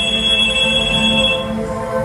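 A telephone ringing: one high, steady ring lasting about a second and a half, then stopping. Sustained background music runs underneath.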